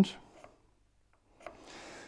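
Faint pencil scratching on a planed wooden edge, starting with a light tick about a second and a half in after a near-silent pause, as a squiggle is drawn along the surface.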